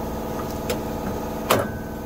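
Electric PTO clutch of a Toro TimeCutter Z4220 being worked by hand on its shaft, giving a couple of light clicks and then a sharp metallic knock about a second and a half in as the stuck clutch shifts on the shaft. A steady mechanical hum runs underneath.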